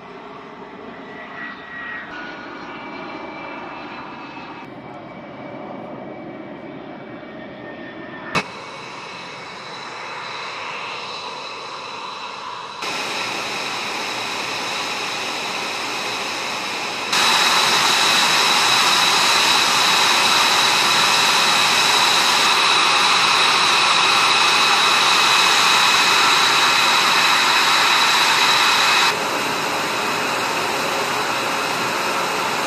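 F-22 Raptor jet engines running: the noise and whine of a jet rolling on the runway, then a much louder, steady high-pitched engine whine up close. The level jumps abruptly several times, and a single sharp click comes about eight seconds in.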